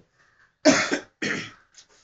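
A person coughing twice, about half a second apart, the first cough louder.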